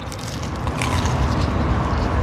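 Two people biting into and chewing panini-pressed Reuben sandwiches, with a few crunches of the toasted bread about halfway in over a steady low rumble.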